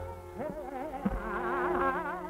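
Hindustani classical vocal recording: a woman's voice sings a fast, wavering taan, the pitch shaking up and down several times a second, over a steady drone.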